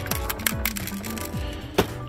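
Soft background music, over which a boxed diecast toy hauler in its plastic and cardboard packaging gives several sharp clicks and rattles as it is handled and shaken; loose parts are rattling inside it.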